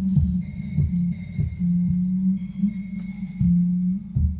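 Live electronic music from a DSI Tempest analog drum machine and synth, run through a mixer and effects pedals and picked up by a camera's built-in microphone. A held low bass note sits under irregular low thumps, with a thin high tone that drops in and out.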